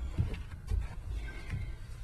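Low steady background rumble with a few faint soft knocks and clicks, such as small movements near the microphone.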